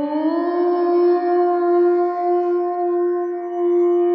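A conch shell (shankh) blown in one long steady note that scoops up in pitch at the start, sounding over a steady musical drone.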